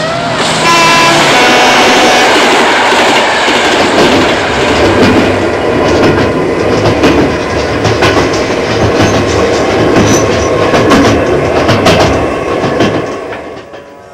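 A moving train: a steady rumble with wheels clicking over the rail joints, and a horn sounding briefly near the start. The sound fades out near the end.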